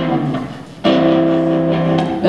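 Live blues-rock band playing between sung lines. The music dips and fades about half a second in, then a new sustained chord comes in sharply just before the one-second mark and holds.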